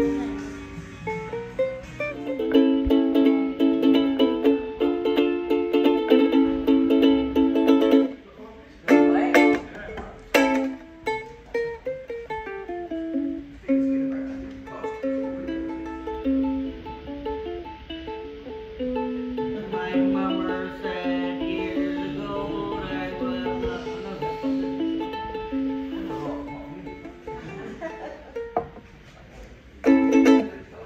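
Acoustic ukulele played by hand. It opens with several seconds of full strummed chords, breaks into a few sharp strokes, then moves to a picked single-note melody for the rest of the time.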